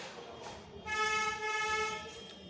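A vehicle horn giving one steady honk of about a second, starting a little before halfway.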